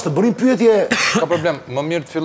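A man speaking, with a brief breathy hiss about a second in.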